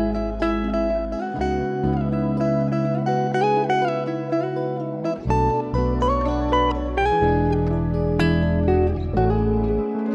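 Clean-toned SG-style electric guitar playing a melody of single plucked notes over long held low bass notes that change every few seconds.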